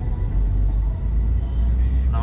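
Steady low rumble of road and engine noise inside a moving Mercedes-Benz car.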